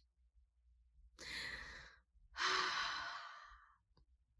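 A woman drawing a breath and then letting out a long, louder sigh.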